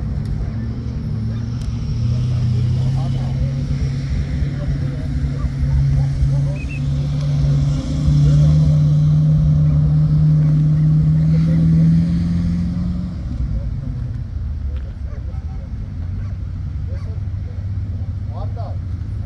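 A motor vehicle's engine running, its hum climbing in pitch in a few steps over about ten seconds, loudest near the middle, then fading away, over a steady low rumble.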